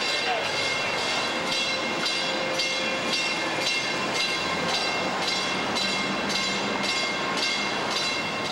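Traffic crossing a steel bascule bridge deck: a steady rolling noise from tyres on the steel, with a faint whine and a regular clatter running through it.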